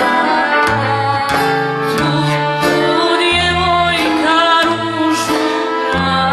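Live sevdalinka: a young woman singing with vibrato over a small folk band of accordion, violin, acoustic guitar and hand drum.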